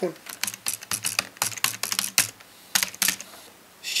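Computer keyboard typing: a rapid, irregular run of about fifteen keystrokes as a password is entered, stopping about three seconds in.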